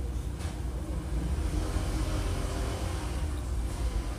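Steady low background rumble, with a faint hum rising slightly in the middle.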